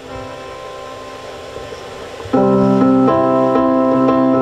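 Electronic keyboard playing the introduction to a song. A soft held chord sounds first. About two seconds in, a much louder sustained chord comes in, with a short repeating figure of notes over it.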